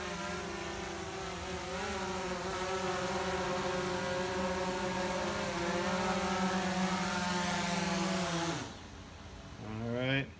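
DJI Phantom 4 quadcopter's motors and propellers buzzing steadily, wavering a little in pitch as it comes down, then cutting off suddenly near the end as the motors shut down after landing.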